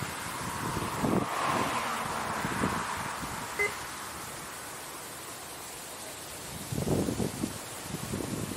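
Steady outdoor background noise picked up by a body-worn camera's microphone, with a brief faint chirp a few seconds in and some rustling near the end.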